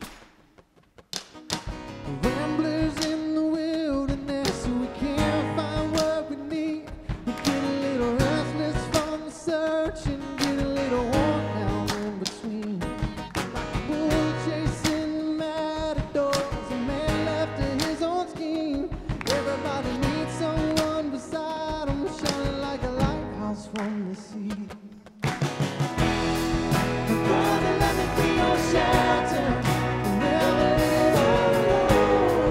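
A live church worship band starting a song: drum kit, bass and guitars with a melody line on top. The band comes in about a second in, thins out briefly just before 25 s, then returns fuller and louder.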